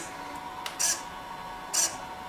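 King Max CLS0512W thin-wing servo with an all-metal gear train cycling its arm from side to side: a short high-pitched whirr of motor and gears at each sweep, about one a second, three times.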